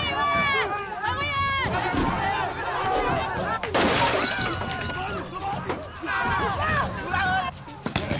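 Raised voices shouting and crying out in agitation, with a sudden crash of window glass shattering about four seconds in.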